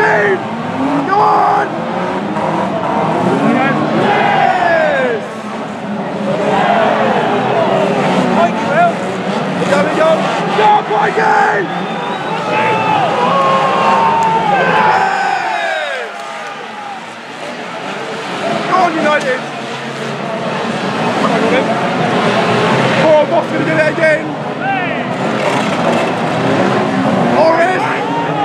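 Several banger-racing cars' engines revving hard under wheelspin, with tyres screeching, a dense mix of pitches rising and falling over each other. It drops a little quieter about two-thirds of the way through.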